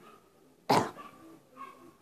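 A person clears their throat once, a short cough close to the microphone, about two-thirds of a second in.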